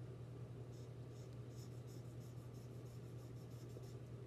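Lighting a briar tobacco pipe with wooden matches: a run of faint, quick scratchy ticks that begin about a second in and come faster toward the end.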